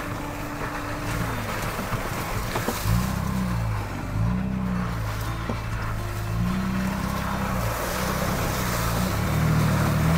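Ford Bronco Raptor's twin-turbo V6 engine pulling the truck slowly along a wet dirt trail, its pitch rising and falling several times as the throttle is eased on and off, over a steady hiss.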